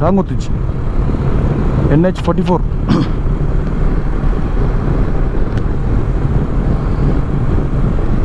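Motorcycle riding at highway speed: wind rushing over the rider's microphone over engine and road noise, steady throughout. A short spoken phrase comes about two seconds in.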